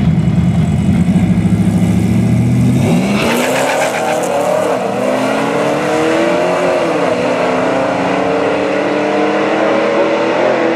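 Two V8 drag cars, a 2014 Camaro SS on nitrous and a supercharged 5.3 Silverado, are held at a loud low rumble on the line. They launch about three seconds in and accelerate hard away, their engine notes climbing and dropping back at each upshift.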